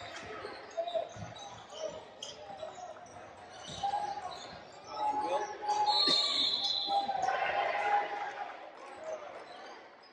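Basketball bouncing on a hardwood gym floor, a few separate bounces, with players' voices echoing in the large gym.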